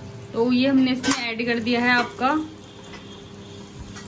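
Tomatoes and garlic, cumin and green-chilli paste frying in oil in an iron kadhai: a steady sizzle under a ladle stirring, heard on its own in the second half.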